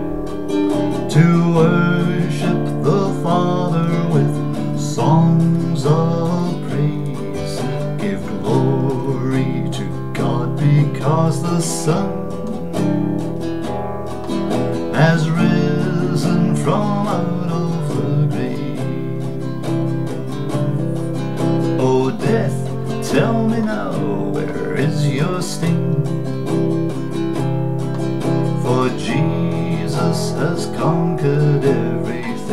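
Nylon-string classical guitar strumming chords under a man singing a slow hymn melody.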